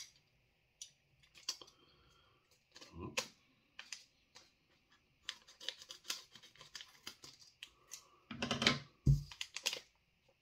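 Scissors snipping open a crinkly chip packet: many short sharp clicks and rustles of the scissor blades and packet. A louder burst of handling noise comes about eight and a half seconds in.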